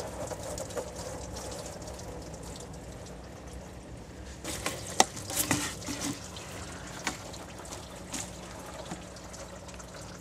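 Engine coolant running out of a disconnected coolant hose into a drain pan below, a steady trickle. A few sharp clicks sound over it about halfway through.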